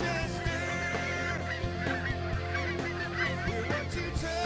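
Geese honking, several calls overlapping, over music with steady sustained low notes.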